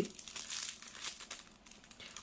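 Light crinkling and rustling from small items being handled close to the microphone, fading toward the end.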